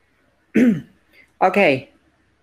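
A man clears his throat once, a short sound falling in pitch, then says "OK".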